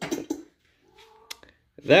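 A cat meowing briefly and faintly, about a second in.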